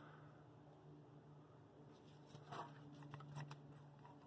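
Near silence with a faint low hum, broken in the second half by a few faint clicks and rustles from a hand-squeezed brake-bleeder vacuum pump being worked on a vacuum hose.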